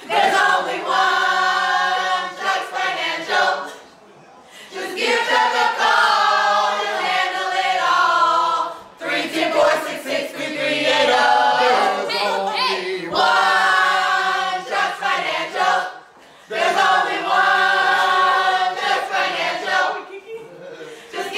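A group of voices singing together without instruments, in four long phrases with short breaks between them.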